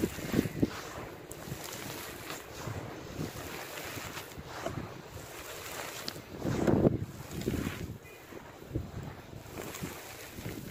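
Pure charcoal crumbled by gloved hands onto a hard floor: a gritty crunching and the rustle of falling grains and dust, coming in uneven bursts with the loudest about two-thirds of the way through.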